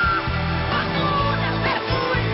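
Live band playing pop-rock music, with a steady bass and drum beat; a held high note ends just after the start.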